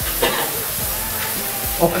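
Shower running: a steady hiss of water spraying.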